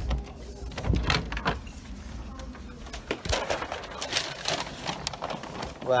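Scattered, irregular knocks and clicks, a cluster of them about a second in and more around four seconds, with faint voices in the background.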